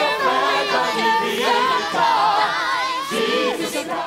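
A chorus of voices singing in a stage musical, holding long notes that shift in pitch.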